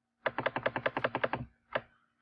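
Computer mouse clicking: a quick, even run of about fifteen sharp clicks in just over a second, then one more single click near the end.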